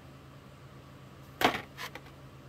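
Clear plastic blister pack of a carded diecast toy bus being handled, giving one sharp plastic click about one and a half seconds in and a fainter one just before the end.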